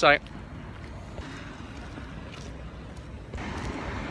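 Steady outdoor background noise, an even low rumble and hiss with no distinct events, after the last syllable of a word at the very start.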